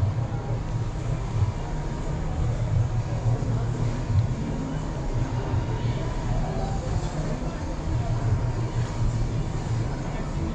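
A steady, fluttering low rumble, typical of a body-worn camera's microphone being rubbed and jostled, mixed with the rustle of t-shirts being picked up and held open. Faint voices can be heard in the background.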